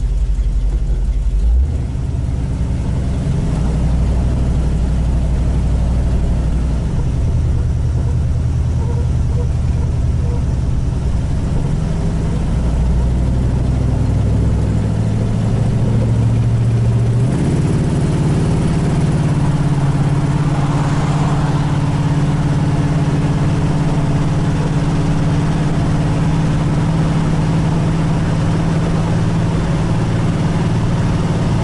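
1967 Chevy Nova's engine heard from inside the cabin while driving, its pitch shifting in steps several times in the first half as the car gets up to speed, then holding steady at cruise.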